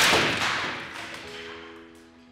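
A wooden board, fired as simulated tornado debris, smashing into a brick wall test panel: a loud crack of splintering wood right at the start, then the noise dying away over about a second and a half.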